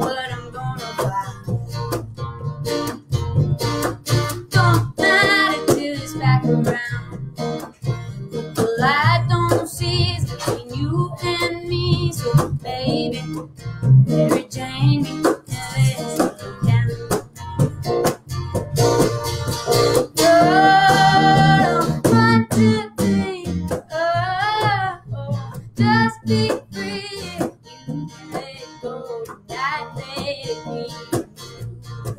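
Woman singing, her held notes wavering with vibrato, over two strummed acoustic guitars, live and unamplified in a room.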